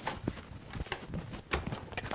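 A lit firecracker fuse sparking by a door: a few scattered small, sharp crackles and clicks.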